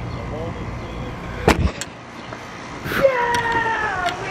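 Low wind rumble on the microphone, a sharp knock about one and a half seconds in with a smaller one just after, then a long, high-pitched voice call from about three seconds in, held and falling slightly in pitch.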